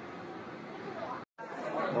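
Faint background chatter over an even hiss, cutting off abruptly just over a second in. After a brief gap, a person starts speaking in Korean.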